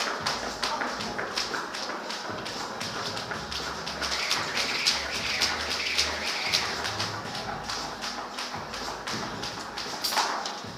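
Jump rope slapping a rubber gym floor in a quick, even rhythm during double-unders.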